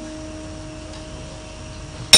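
A single steady held musical note, with no wavering in pitch, fading slowly over a low background hum.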